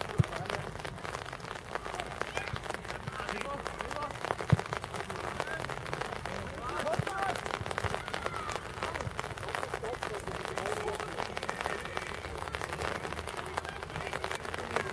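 Steady rain pattering close to the microphone, with distant voices calling out and two sharp knocks, the louder one about four and a half seconds in.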